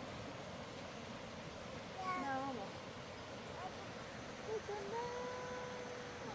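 A toddler's voice: a short call about two seconds in, then a long steady 'aah' held for about a second and a half near the end, over the steady rush of a river.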